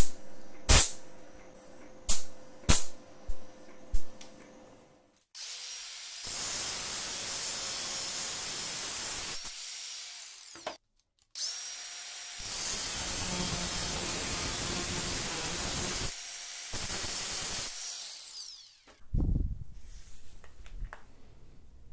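A MIG welder striking about six short tack welds, each a brief crackle, in the first four seconds. From about five seconds in, a handheld power tool runs in three long spells with short breaks, working on the steel, and there is a knock near the end.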